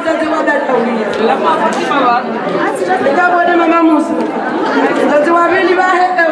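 Several people talking at once: overlapping chatter of voices in a large hall.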